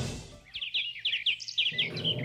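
Small bird chirping: a quick run of about eight short, high chirps lasting just over a second.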